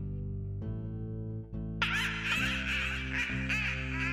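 Homemade Halloween soundtrack music of sustained low chords that change every second or so. About two seconds in, a high, wavering laugh comes in over them: a witch's cackle.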